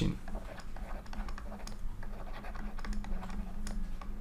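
Pen stylus tapping and scratching on a drawing tablet during handwriting: a run of faint, irregular clicks over a steady low hum.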